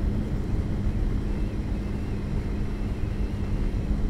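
Motorcycle riding at about 60 km/h, picked up by a lavalier mic in a helmet: steady wind rumble with a steady engine hum underneath.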